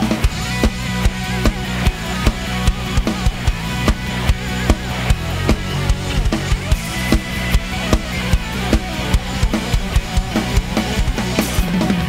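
Live rock band playing an instrumental passage: a drum kit with regular bass drum and snare hits over electric bass and guitar, with a steady beat. Heard through the bass player's in-ear monitor mix.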